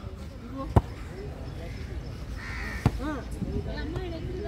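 A volleyball being struck, two sharp smacks about two seconds apart, the first and louder one under a second in, with faint voices around.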